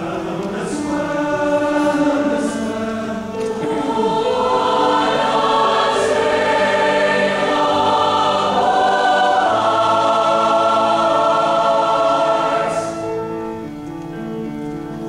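Large choir singing in full harmony, with long held chords. The sound builds louder a few seconds in and eases off near the end.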